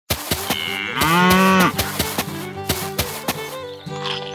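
A cow moos once, about a second in, a single call under a second long, over background music with a percussive beat.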